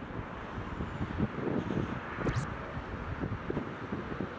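Wind gusting over the microphone, over a steady rumble of road traffic from the street below, with one brief, sharper rush of noise just past halfway.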